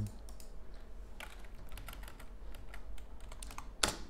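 A few scattered keystrokes on a computer keyboard, the loudest just before the end.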